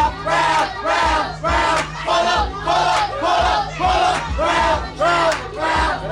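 Crowd chanting and shouting together in rhythm, about two shouts a second, each with a low thump under it.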